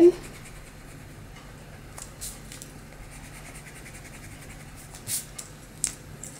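Pencil eraser rubbing on drawing paper, heard as a few short scratchy strokes about two seconds in and again near the end, faint in between.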